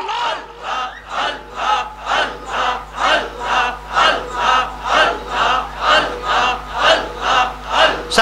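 Many men's voices chanting "Allah" together in rhythmic zikr, about two chants a second, each a short rise and fall in pitch.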